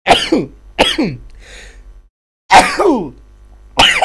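A person coughing hard in a fit: four harsh coughs, with a short pause after the second.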